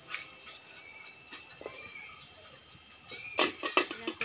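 Aluminium cooking-pot lid clattering in a few quick, sharp metal knocks about three seconds in, as it is handled on the pot.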